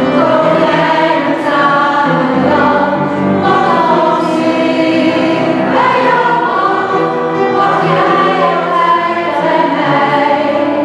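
Mixed choir of men and women singing a song together, accompanied by piano, the sustained sung notes carrying without a break.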